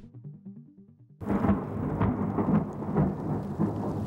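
Heavy rain pouring down onto muddy water, with a low rumble underneath; it starts suddenly about a second in. Before it, soft music notes sound faintly.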